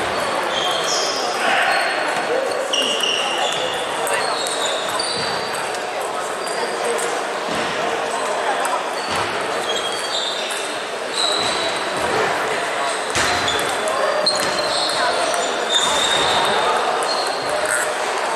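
Table tennis balls ticking off bats and tables, many short hits at irregular times from several tables, in a large echoing sports hall over a background of chatter.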